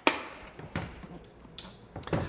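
Hard plastic Pelican carrying case being handled and stood on end: a sharp plastic click right at the start, then softer knocks about three-quarters of a second and a second and a half in.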